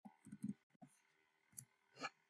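Faint keystrokes on a computer keyboard: about half a dozen short, uneven clicks as a terminal command is typed, with one more near the end as it is entered.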